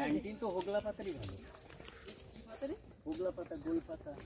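Steady high-pitched insect chorus, a continuous shrill drone, with people's voices talking in stretches underneath it.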